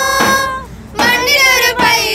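A group of women and girls singing a Malayalam Christmas carol in long held notes, breaking off briefly about halfway before the next phrase.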